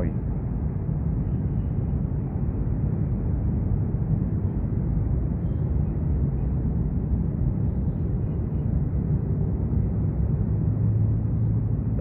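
Steady low outdoor rumble with no distinct events, the kind of background noise heard at an urban riverbank.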